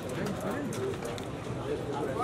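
Indistinct murmur of several men's voices talking in the background, steady and without clear words.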